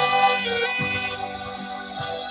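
Saxophone playing a slow melody in long held notes, with a lower sustained accompaniment underneath.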